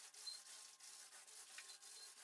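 Faint rubbing of a paint roller on an extension pole, spreading emulsion over primed wallpaper in steady strokes.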